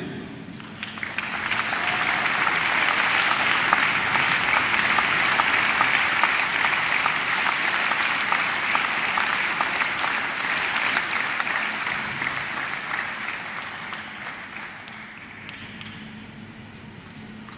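Audience clapping: it swells about a second in, holds steady, and dies away over the last few seconds.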